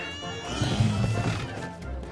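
Animated film soundtrack: background music with a brief low animal vocal sound, the cartoon bull's, about halfway through.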